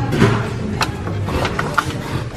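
A handful of short sharp clicks and rustles from a cardboard gift box being picked up and handled, over steady background music.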